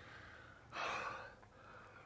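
A man's single heavy breath, about a second in, after losing his phone in deep water.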